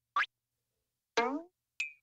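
Short cartoon sound effects: a quick rising swoop, then a falling glide about a second in, then a brief high ping near the end, with silence between them.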